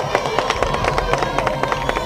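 Crowd applauding: a dense patter of many handclaps, with a steady high tone held through it.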